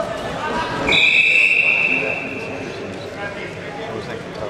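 Referee's whistle blown once about a second in, a steady shrill tone held for about a second and a half, stopping the action after a throw. Voices murmur in the hall before and after it.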